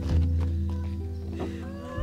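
Dramatic background music built on a deep, sustained low note. Near the end comes a short, wavering, high-pitched cry.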